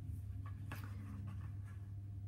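Cardstock being handled and slid flat onto a gridded craft mat: faint paper rustling and a few light taps, over a steady low hum.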